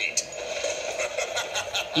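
Background music from a Halloween jack-o'-lantern projection soundtrack between its spoken lines, with a quick steady ticking beat of about four or five ticks a second.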